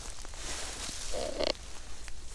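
Faint rustling and handling noise in dry fallen leaves and grass, with one short, distinct sound lasting under half a second just past the middle.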